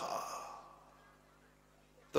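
A man's voice trailing off at the end of a phrase into a breathy exhale at the microphone, fading over about a second, followed by a pause of near silence.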